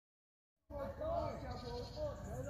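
Silence, then, under a second in, faint voices with rising and falling pitch as the outdoor recording begins.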